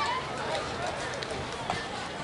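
Faint background chatter of several voices talking, too distant to make out, with a few small ticks.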